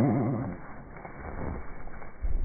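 Australian magpie call slowed down to a deep, rapidly wavering call like a whale or dinosaur. It fades out about half a second in, and fainter low sounds follow.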